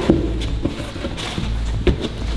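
Light knocks and scuffs of foam food-transport box lids being handled and set down by a gloved hand. There are several short knocks, the loudest just before the end.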